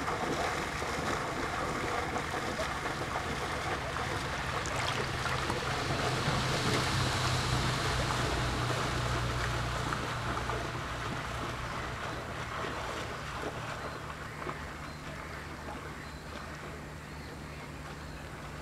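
A small motorboat's engine running out on the water, a low steady drone that grows louder about six seconds in and then fades away, over small waves lapping at the shore rocks.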